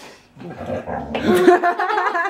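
A boy laughing, starting about half a second in and loudest just past the middle.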